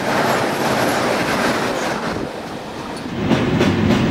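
Rushing noise of an ICE train passing close alongside at speed, heard from an open carriage window; it fades about two seconds in. A little after three seconds a lower rumble with rapid clicking sets in.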